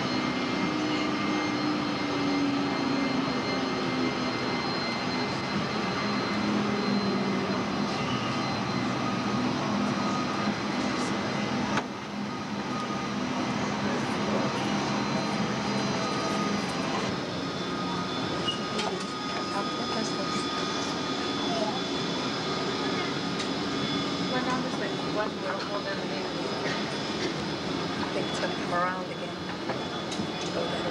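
Jet engines of a taxiing Boeing 727 airliner: a steady rumble and hiss with high, even whining tones, and a low hum that slides slowly down in pitch over the first several seconds. Faint voices come in near the end.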